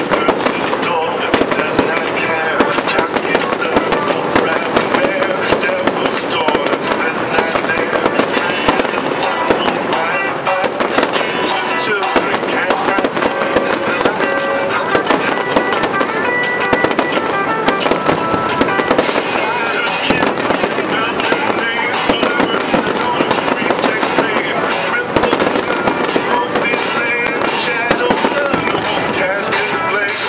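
Aerial fireworks display: a dense, unbroken run of bangs and crackles as shells burst overhead, with music playing along.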